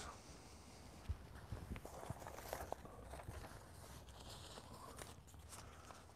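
Faint footsteps and small knocks of a person moving about close to the microphone, with scattered light ticks and rustles.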